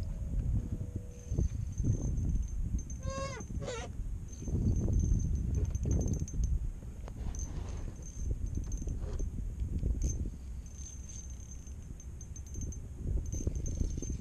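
Wind buffeting an outdoor microphone in a rising and falling rumble, with a short warbling, rising sound about three seconds in.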